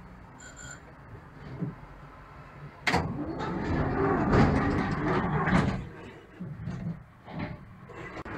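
Passenger doors of a Konstal 803N tram closing: a sharp clunk about three seconds in, then about three seconds of loud, rattling door-mechanism noise, and a few short knocks as they shut.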